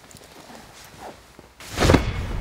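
Bedding rustling softly, then a loud thump and swish near the end as a pillow is flipped and beaten on the bed.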